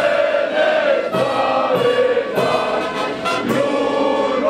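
Choir singing with brass accompaniment, in long held notes.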